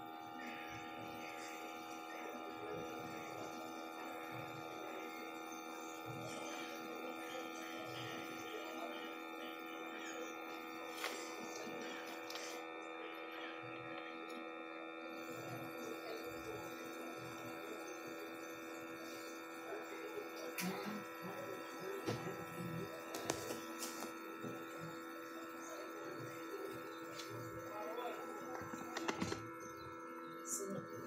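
A steady hum made of several fixed tones, with a few light clicks and taps in the last third.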